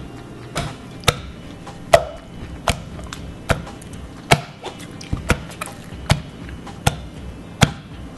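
A pestle pounding hot, sticky sweet rice (glutinous rice) dough in a mortar: about ten sharp strikes, roughly one every 0.8 seconds. This is the pounding that makes injeolmi dough chewy and elastic.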